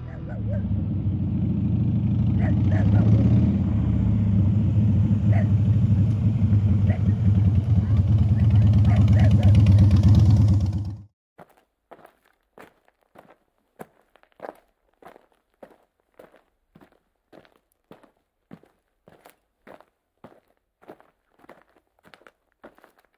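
Large cruiser motorcycle's engine running with a steady low rumble, which cuts off suddenly about halfway through. After it come light footsteps on dry ground, about two a second.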